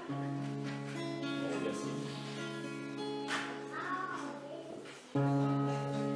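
Acoustic guitar plucked, its chord notes ringing on, then a louder chord struck about five seconds in.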